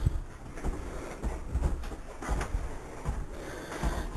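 Footsteps on a travel trailer's floor: irregular low thumps, a few a second at most, over faint rustling.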